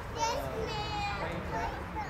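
People's voices talking, several short phrases.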